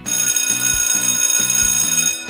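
A bell-like ringing signal sound that starts abruptly, rings steadily for about two seconds and then cuts off. It is the cue for the players to stop.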